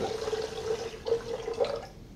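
Liquid being poured from a glass flask into a funnel and running down a clear tube: a trickling pour with one steady note, stopping just before the end.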